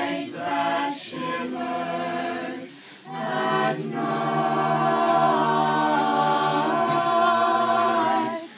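A small group of high school carolers singing a cappella in harmony. After a short phrase there is a brief pause about three seconds in, then a long held chord.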